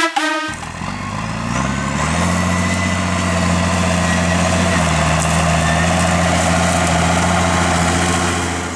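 McCormick MTX140 tractor's diesel engine working under load while pulling a plough. It rises in pitch over the first couple of seconds, then holds a steady note with a slight dip about halfway.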